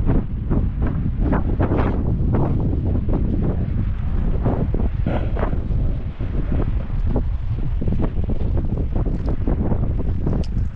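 Wind buffeting the microphone: a loud, steady low rumble broken by irregular gusts.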